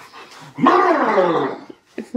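A golden retriever giving one loud, drawn-out play vocalization that falls steadily in pitch over about a second, while being roughhoused.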